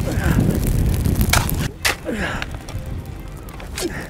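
Shovel scraping and throwing dirt onto a burning grass fire, with a few sharp scrapes and knocks about a second and a half in, over wind rumbling on the microphone.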